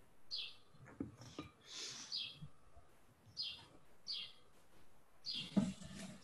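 A bird chirping faintly in the background, a string of short downward-sliding chirps repeated about once a second, with faint low knocks between them.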